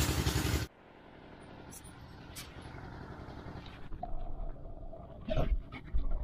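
A DJI Osmo Action camera's microphone being plunged into river water for a waterproof test: loud open-air sound with an engine running cuts off abruptly less than a second in as the camera goes under. What is left is a muffled underwater hush with a few faint knocks, then a faint steady hum, and a couple of louder knocks near the end.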